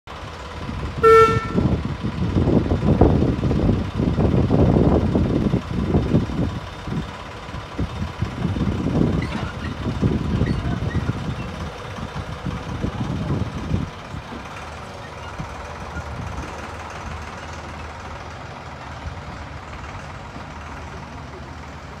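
Miniature railway locomotive giving one short toot as it departs, then working hard in uneven pulses as it pulls away for about a dozen seconds. It settles to a quieter rumble as the carriages roll past.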